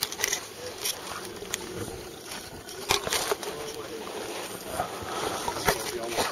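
Wind buffeting an outdoor microphone: a steady rough rush broken by many sharp crackling pops, with faint voices under it.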